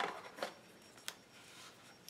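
Quiet handling of a small cardboard box and a paper card: a few soft clicks and rustles, about half a second and a second in, over faint room tone.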